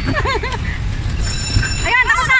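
Electric bumper cars running across the rink floor: a steady low rumble, joined about a second in by a thin high whine.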